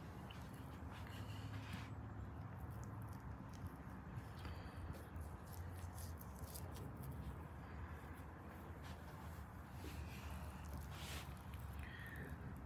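Faint knife work: a thin knife slicing the silver skin off a raw beef tenderloin, with soft scrapes and small clicks over a steady low hum.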